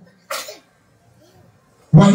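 A single short, sharp burst of a person's breath, sneeze-like, about a third of a second in.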